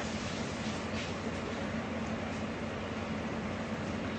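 Steady background hum and hiss with a constant low tone, unchanging throughout.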